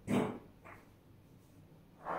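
A dog barking: one loud short bark right at the start and a fainter one under a second in.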